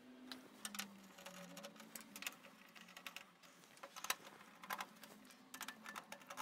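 Faint irregular clicks and scrapes of a screwdriver working screws out of the metal drive carrier bracket.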